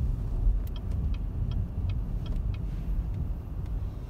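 Low road and drivetrain rumble heard inside a 2018 Cadillac CT6's cabin while it is driving, with a run of light, faint ticks a couple of times a second.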